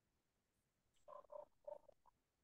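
Near silence on an open video-call line, with a few faint short sounds about a second in.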